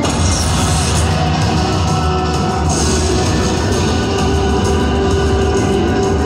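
Zeus Unleashed slot machine's free-games bonus music playing steadily and loudly, with two brief hissing sweeps in its sound effects: one just after the start and one a little under three seconds in.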